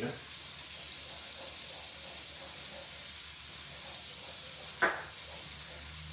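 Salmon fillet frying in a skillet of butter and oil, a steady sizzle, while a wooden spoon stirs a pan of creamy pasta sauce. A single sharp knock about five seconds in.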